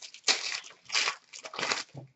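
Hockey card pack wrappers crinkling and tearing as packs are ripped open by hand, in three short crackly bursts a little under a second apart.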